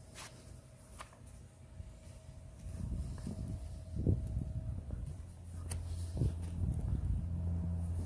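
A low, steady hum that grows louder about two and a half seconds in, with a few soft knocks of footsteps and handling.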